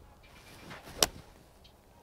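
Golf swing with a seven iron: a short swish of the club coming through, then one sharp click as the clubface strikes a three-piece urethane golf ball about a second in.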